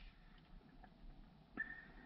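Near silence: faint room tone, with a thin faint high tone coming in near the end.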